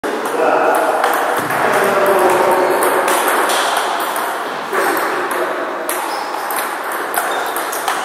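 Table tennis ball clicking repeatedly off the bats and the table during a rally.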